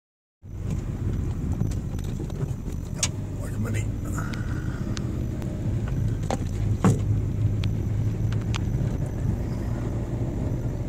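Car cabin noise while driving slowly: a steady low engine and tyre rumble, with a few sharp clicks and knocks, the loudest a little before seven seconds in.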